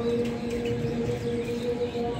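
Birds chirping in short calls over a steady low hum that holds one pitch.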